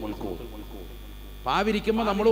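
Steady low electrical mains hum during a pause in a man's talk; his voice starts again about one and a half seconds in.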